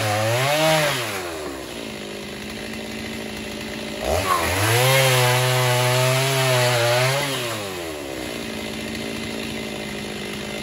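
Two-stroke gas chainsaw cutting through stacked sawmill slabs, its engine pitch wavering under load. One cut ends about a second in and the saw drops to idle. A second cut runs from about four seconds in to about eight, and then the saw idles again.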